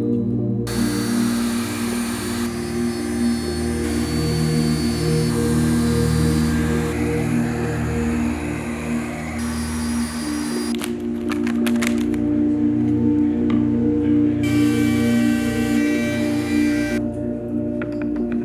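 Ambient instrumental music with long sustained tones. For long stretches, a steady hiss of shop machinery runs beneath it, stopping at about 11 seconds and returning briefly a few seconds later.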